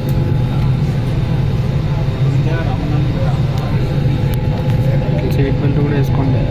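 Steady low hum inside an airliner cabin standing at the gate, with passengers talking faintly in the background.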